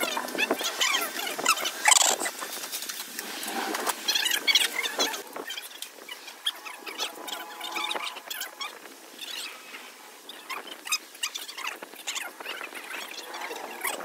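Irregular metallic clicks and clinks of a socket wrench on an extension bar turning nuts onto the studs of a truck differential housing, the loudest clink about two seconds in.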